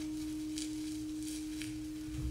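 A steady, pure sustained tone held at one pitch in a contemporary chamber-music texture, with faint soft brushing or scraping noises above it.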